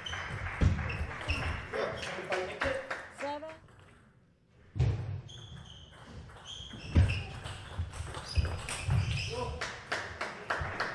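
Table tennis play: a plastic ball struck back and forth by rubber-faced rackets and bouncing on the table in a series of sharp clicks. The sound drops out for a moment about four seconds in, then play picks up again with a hard strike.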